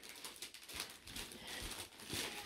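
Faint, irregular rustling and crinkling of brown kraft wrapping paper as a toddler tugs at a present's wrapping.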